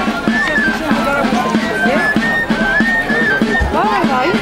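Traditional folk music: a high piped melody in held, stepping notes over a steady low drone, with people's voices chattering alongside.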